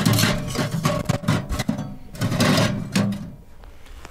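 Metal stovepipe sections grating and rattling as they are pushed into the pipe collar of a small portable tent stove. The sound comes in two scraping bouts, the second starting about two seconds in.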